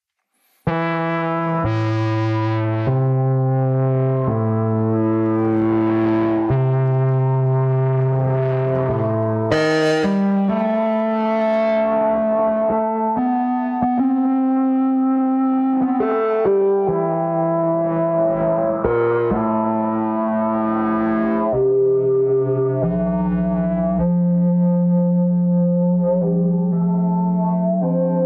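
Redshrike synthesizer played on a keyboard through the Combustor resonator effect at its Init settings. A run of held notes starts just under a second in, changing pitch every second or two.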